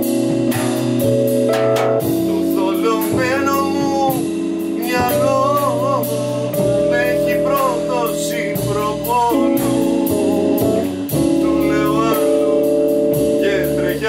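Live jazz trio: Rhodes electric piano chords with upright bass and drums, a cymbal kept up in a steady even pattern. A voice sings a wavering melody line over it from a couple of seconds in, pausing and returning near the end.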